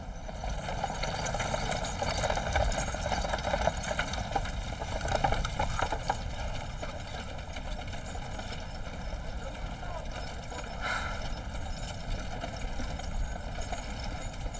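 A horse walking with its hooves clip-clopping, as it is led with a cart, over a steady background bed.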